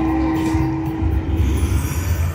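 Video slot machine sounding off on its total-win screen at the end of a bonus round: a single held tone for about a second and a half over a low, rumbling bass.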